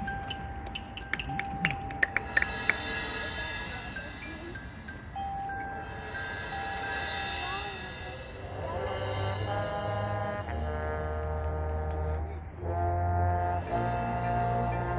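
High-school marching band opening its field show: the front ensemble's mallet percussion plays held tones under shimmering high swells, after a few sharp clicks. About eight seconds in, the brass enters with long held chords over low bass notes, getting louder near the end.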